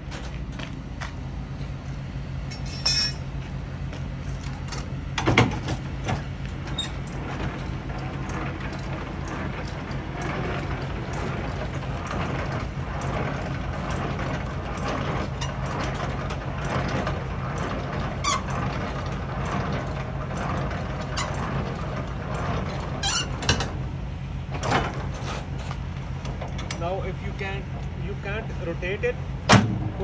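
Semi-truck diesel engine idling steadily, with a few sharp metallic knocks from the trailer's landing-gear crank handle being handled.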